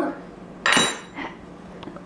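A glass spice jar being set down on the counter with a sharp clink under a second in, then a lighter knock.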